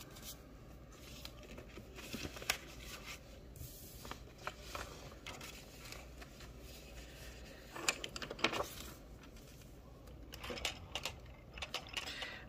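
Soft, scattered rustles and light taps of paper banknotes and paper sheets being handled on a wooden desk, with a busier cluster of paper sounds about eight seconds in.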